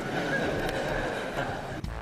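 A young woman's breathy, wheezing laughter close to a microphone, cut off abruptly near the end.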